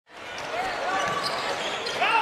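Game sound on a hardwood basketball court: a ball being dribbled and several short sneaker squeaks over a steady arena hum, fading in from silence at the start.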